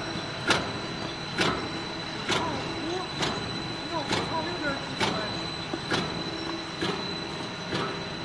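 Dog-chew stick cutting machine running: a steady machine hum with a constant high whine, and a sharp chop about once a second as the cutter cuts the extruded strand into sticks.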